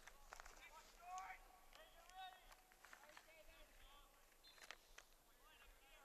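Near silence, with faint, distant voices calling out on the field, mostly in the first few seconds, and a few light clicks.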